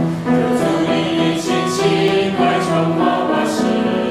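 A small mixed choir of young men and women singing a hymn together, the notes held and changing about every half second, with the hiss of sung consonants a few times.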